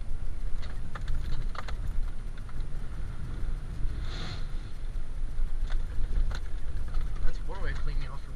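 Ford Super Duty pickup driving through a mud hole, heard from inside the cab: a steady low engine and drivetrain rumble with scattered knocks and jolts from the rough ground. About four seconds in, a brief rush as mud and water spray over the windshield.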